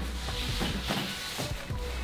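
Pillow sliding down a slide of taped cardboard sheets laid over a staircase: a faint, soft scraping as it goes down.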